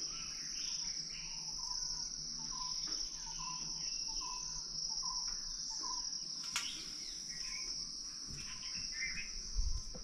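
Steady high-pitched drone of an insect chorus, with birds chirping over it and a short note repeating about twice a second. A sharp click comes past the middle and a low thump near the end.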